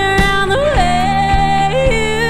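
Live country band with a woman singing: her voice holds long notes and slides up between them, over guitars and a steady drum beat.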